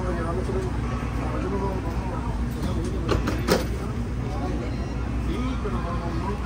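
Small shuttle bus's engine running with a steady low rumble, heard from inside the cabin, with one sharp knock about three and a half seconds in.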